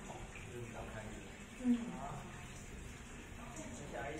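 Faint, indistinct talk, with one short, louder voiced sound a little under two seconds in.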